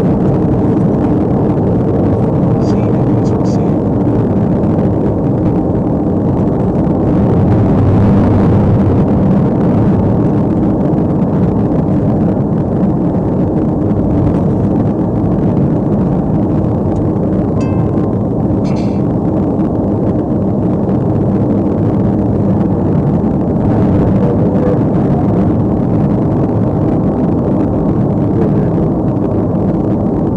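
Steady engine and road noise inside a patrol car driving at highway speed, with a few brief high clicks or beeps about 3 seconds in and again near the middle.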